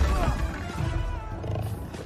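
Movie-trailer soundtrack: dramatic music with a big cat's roar, opening on a heavy low crash.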